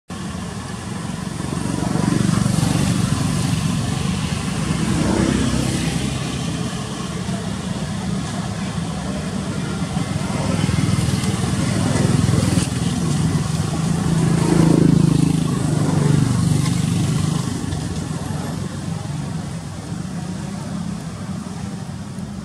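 Road traffic passing: motor vehicles' engine rumble swelling and fading as they go by, with the loudest pass-bys about five and fifteen seconds in.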